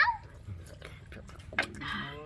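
Short wordless vocal cries, whimper-like: one trails off at the start, and another near the end falls in pitch. They come from a person reacting while eating spicy instant noodles. A sharp mouth click comes just before the second cry.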